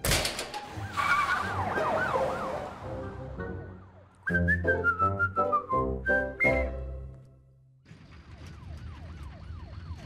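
Cartoon score and sound effects: a sharp hit, then a stepwise descending run of loud musical notes in the middle. From about eight seconds a siren wails up and down quickly, roughly two to three cycles a second.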